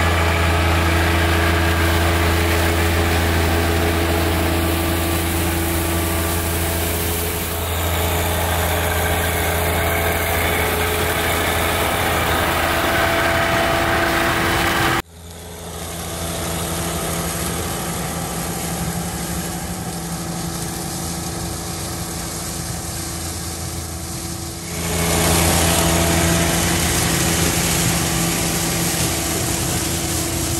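John Deere 1025R compact tractor's three-cylinder diesel engine running steadily while it drives a PTO-powered lawn sweeper through leaves. The sound drops off abruptly about halfway through and comes back louder about ten seconds later.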